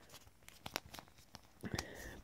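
Faint, scattered clicks and rustles of an action figure being handled as a small shirt accessory is pulled onto it.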